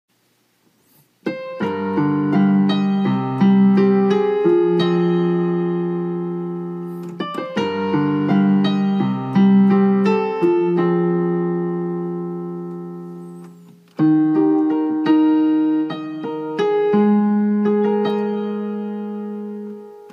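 Solo digital piano playing a slow ballad in E-flat: chords and melody notes struck and left ringing as they fade. It starts after about a second of silence, and new phrases begin about seven and fourteen seconds in.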